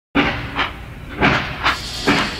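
Steam train chugging, a recorded train sound effect: four chuffs in two seconds, coming in pairs.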